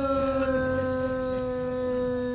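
A man's voice holding one long, steady, high note into a microphone, a drawn-out cry in a majlis recitation.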